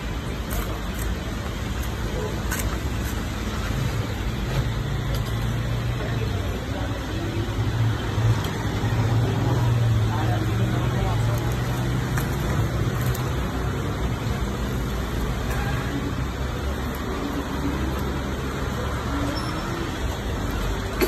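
Street traffic with a motor vehicle's engine running close by: a low drone that swells in the middle and then eases back into the steady road noise.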